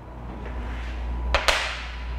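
Low rumbling movement noise on the microphone as a man turns and walks, with two sharp clicks close together about one and a half seconds in.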